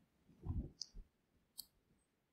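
A soft low thump about half a second in, followed by a few faint short clicks.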